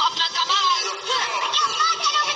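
High-pitched cartoon voices singing over music, played from a television's speaker.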